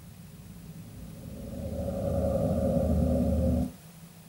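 A motor vehicle's engine rumble with a steady drone above it, growing louder over the first two seconds and then cutting off abruptly near the end.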